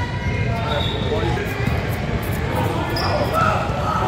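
A basketball bouncing on a hardwood gym floor during play, with players' and spectators' voices in the echoing gym.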